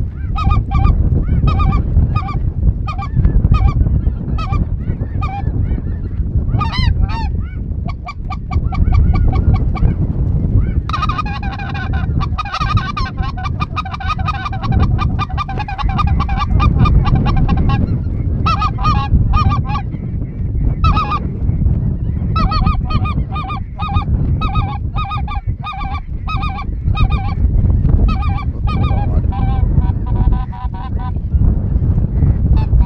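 A flock of geese calling overhead: a continuous stream of short, overlapping honks that grows thickest in the middle and again near the end. A low wind rumble on the microphone runs underneath.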